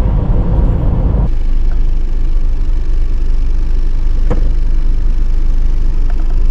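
Steady low rumble of road and engine noise heard inside the cabin of a moving Isuzu MU-7 SUV. The noise changes abruptly a little over a second in, and a single sharp click sounds about four seconds in.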